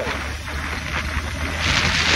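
Wind rushing over the microphone on a moving motorcycle, with the engine's steady low drone underneath; the wind noise grows louder near the end.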